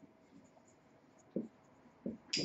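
Faint strokes of a marker writing on a whiteboard, with one short, louder sound about one and a half seconds in.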